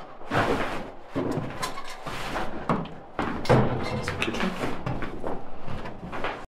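A run of irregular knocks and bumps, the loudest about halfway through.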